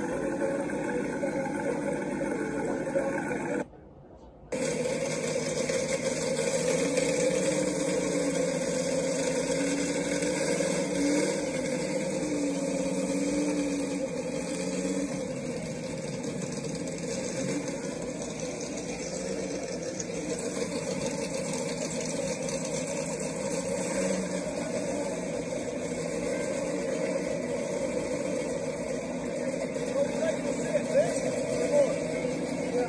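Car show ambience played back through a tablet's small speaker: vehicle engines running amid outdoor background noise. The sound drops out sharply for under a second about four seconds in.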